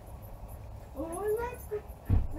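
A dog whining: one drawn-out whine that rises in pitch about a second in and then holds.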